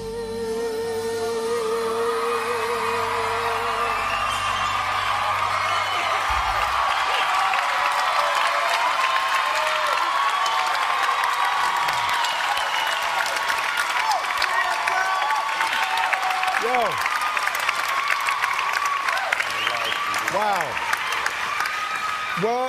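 A female singer holds the final note of a pop ballad over the band, the note wavering until about four seconds in, and the band stops a few seconds later. A studio audience then applauds and cheers, with whoops.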